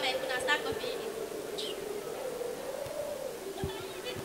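A steady droning hum that wavers slightly in pitch, with a brief snatch of talking at the start.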